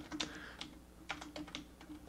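Typing on a computer keyboard: a faint, irregular run of keystroke clicks, a few each second, over a faint steady hum.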